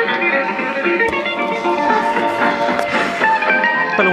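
Music from an AM broadcast station playing through the small loudspeaker of an early-1960s His Master's Voice Sprite germanium transistor radio. The sound is thin, with almost no bass.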